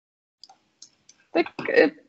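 A few faint, short clicks in the first second, then a spoken word.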